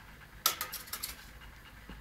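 A utensil knocks sharply against a bowl about half a second in, followed by a few lighter clicks and scrapes.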